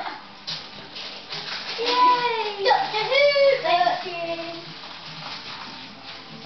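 Papery rustling and crackling, then a high-pitched voice for about two seconds in the middle, its pitch sliding up and down.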